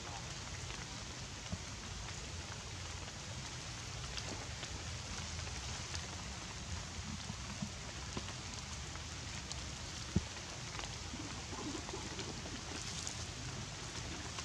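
Steady rain falling on leaves, with scattered drips and one sharp click about ten seconds in.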